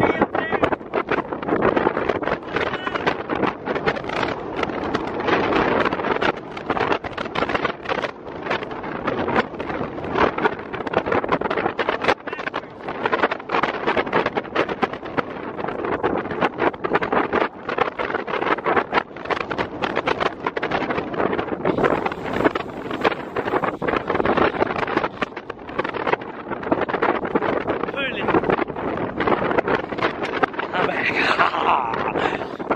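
Wind buffeting the microphone in irregular gusts and rumbles.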